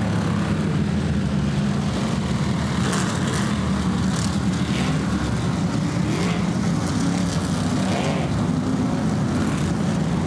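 A pack of modified race cars' engines running together as the field circles the track: a steady, dense engine drone with no break.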